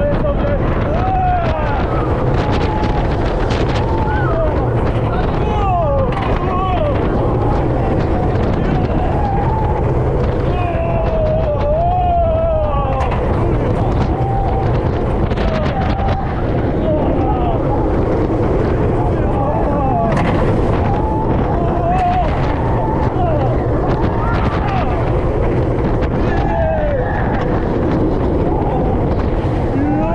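Roller coaster train running at speed, heard from a rider's seat: wind buffeting the microphone over the train's rumble on the track, with riders screaming and shouting throughout.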